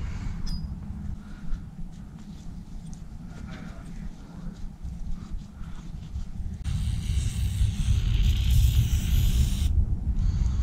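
Aerosol can of press-fit lubricant spraying in one steady hiss for about three seconds, starting about seven seconds in and cutting off suddenly. Before it, low rubbing and handling noise as a steel bearing sleeve is wiped with a shop rag.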